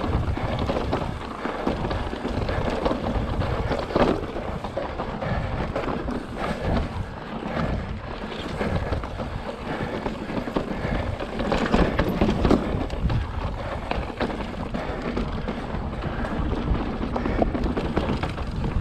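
Fezzari La Sal Peak mountain bike rolling over slickrock: tyres rumbling on the rock, with drivetrain and frame rattle and sharp knocks over rough ledges, the loudest about 4 seconds in and around 12 seconds. Wind buffets the camera's microphone.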